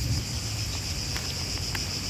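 A steady, high-pitched insect chorus buzzing without a break, with a low rumble underneath and a few faint clicks.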